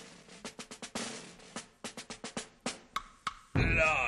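Snare drum struck in a loose, uneven pattern of sharp hits, a few per second, opening a show-tune number. A loud held voice cuts in just before the end.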